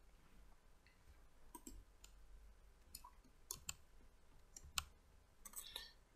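About ten faint computer mouse clicks, scattered and several bunched near the end.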